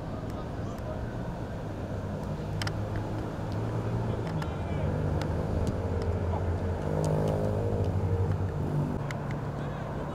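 A motor vehicle's engine running nearby, a steady low drone that grows louder through the middle and fades again near the end, as a vehicle passing by would, under the chatter of voices.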